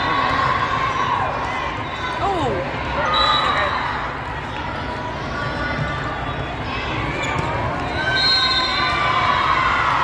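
Indoor volleyball hall din: steady crowd chatter, with balls thudding and shoes squeaking on the court.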